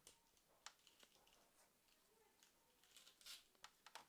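Near silence with a few faint clicks and rustles from a plastic action figure's hip joint and parts being moved by hand.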